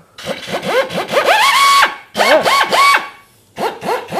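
Finger belt sander run in three short bursts. Each time its whine rises in pitch as it spools up, holds steady, then cuts off, as the narrow belt sands into a tight corner of the body panel.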